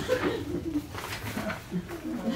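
Indistinct low voices talking quietly in a small room, the words unclear.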